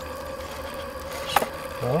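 A small brass twin-cylinder model steam engine running steadily with a constant hum, and one sharp click about a second and a half in.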